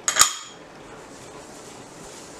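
A single sharp clink of a metal kitchen utensil against the stone counter, with a brief high ring, just after the start, followed by quiet room noise.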